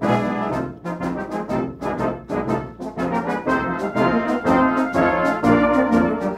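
Brass band of cornets, tenor horns, euphoniums, trombones and tubas playing a march in a steady rhythm, growing louder towards the end.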